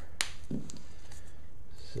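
Painter's tape being handled on a plywood board: one sharp click about a quarter-second in, then a faint papery rasp near the end as a strip comes off the roll, over a steady low hum.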